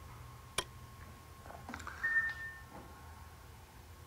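A single sharp mouse click about half a second in, then a brief, faint high beep about two seconds in, over quiet room tone with a faint steady whine.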